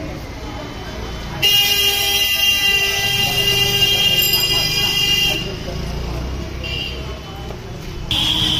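A vehicle horn held in one long steady blast of about four seconds, starting suddenly about a second and a half in, over street noise.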